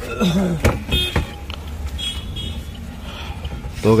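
Plastic clicks and short squeaks as a car's factory stereo head unit is worked loose and pulled out of the dashboard trim, over a steady low background hum.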